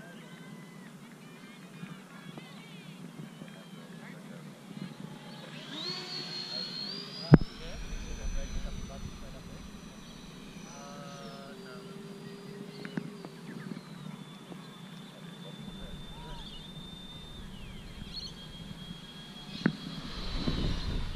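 Twin 12-blade electric ducted fans of an RC A-10 jet whining in flight: a high, thin tone rises as the jet approaches, then eases down and holds steady. A sharp knock about seven seconds in is the loudest sound.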